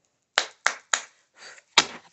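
Four sharp hand slaps: three quick ones close together, then a faint rustle and one more, the loudest, near the end.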